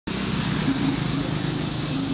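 Steady outdoor traffic noise with a motor vehicle engine running, a low hum under a constant hiss.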